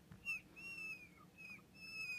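Marker squeaking on a glass writing board as a box is drawn: about four short, faint, high squeals, each bending slightly in pitch, one per stroke.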